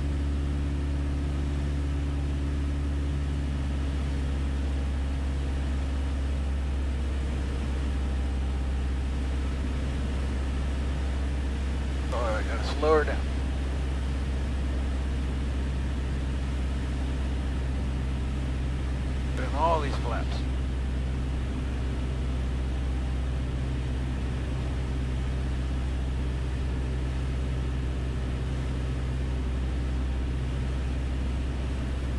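Steady drone of a 1966 Mooney M20E's four-cylinder Lycoming IO-360 engine and propeller, heard inside the cabin on final approach. Two brief voice sounds break in, about twelve seconds in and again about twenty seconds in.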